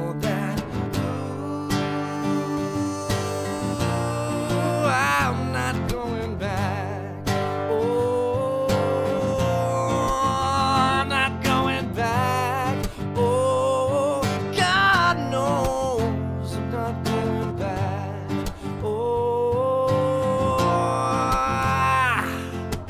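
Acoustic guitar strummed steadily while a man sings long, held notes that waver in pitch over it.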